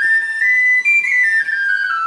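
Irish tin whistle playing a short melody in its high register. The clear notes climb in steps to a peak about a second in, then step back down.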